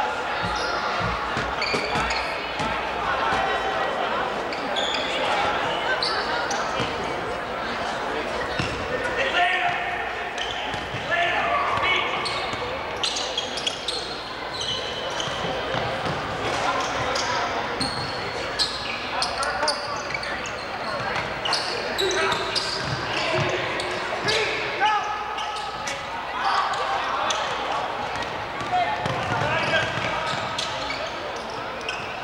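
Basketball game sound in a school gym: a basketball bouncing on the hardwood floor with many short sharp impacts, under the continuous shouts and chatter of players and spectators.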